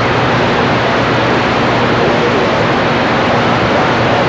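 CB radio receiver hissing with steady band static on an open channel, no station keyed up, with faint wavering voices or tones buried under the noise.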